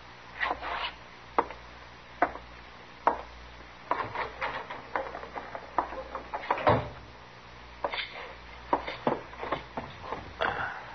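Radio-drama sound effects of a man leaving a room: irregular boot steps on a wooden floor and a door, with a heavier thump about two-thirds of the way through.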